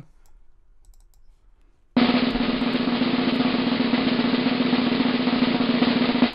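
Snare drum roll, starting suddenly about two seconds in and held steadily for about four seconds.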